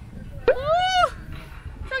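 A person's single drawn-out exclamation, like a "whoa" at the sight of the drop, rising then falling in pitch and lasting about half a second, starting about half a second in. A steady low rumble runs beneath it.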